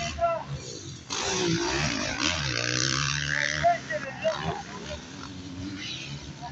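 Motocross dirt bikes' engines revving on the track, loudest from about a second in until nearly four seconds, with the pitch rising and falling, then running on more quietly.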